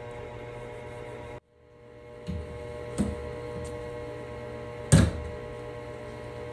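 A few wooden knocks from a cabinet door being handled while its frame is wiped with a rag, the loudest about five seconds in, over a steady electrical hum that cuts out briefly near the start.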